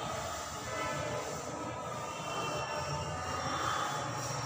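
Felt chalkboard duster rubbing across a blackboard, over a steady background rumble.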